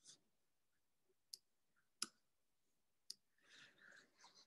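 Near silence broken by three sharp computer-mouse clicks about a second apart, with faint breathy noise near the end.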